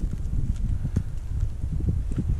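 Wind buffeting the microphone: an uneven low rumble with scattered soft thumps.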